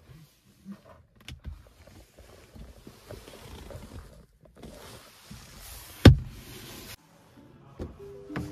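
A car's interior storage compartment being handled: a few small clicks as the lid is worked, rustling handling noise, then one loud sharp knock about six seconds in as the lid shuts.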